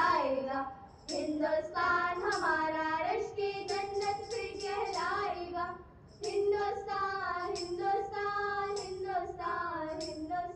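A group of schoolgirls singing a patriotic Hindi song together into microphones, with two brief breaths between phrases, about a second in and about six seconds in.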